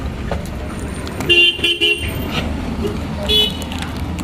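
Vehicle horn honking: a quick run of short beeps about a second and a half in, then one more brief toot near the end, over a steady background of traffic noise.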